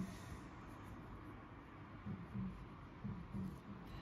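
Caran d'Ache Dunas fountain pen with a fine nib writing on plain copy paper: the nib gives a faint, soft scratch as letters are written out.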